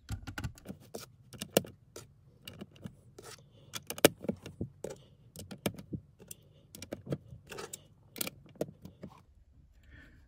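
Plastic LEGO pieces clicking and rattling as tan tiles are pressed onto the top studs of a wall and the model is handled: an irregular run of sharp clicks, the loudest about four seconds in.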